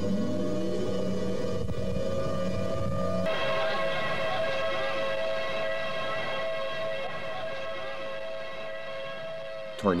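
Tornado warning siren sounding a steady, held two-pitch tone. About three seconds in, a low hum underneath drops away and the siren sounds brighter.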